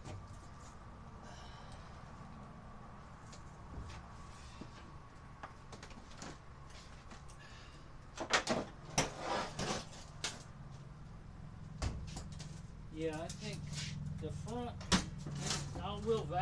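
Knocks and rattles from dryer parts being handled during reassembly, coming as a quick cluster about eight to ten seconds in and as single knocks later. A steady low hum runs underneath.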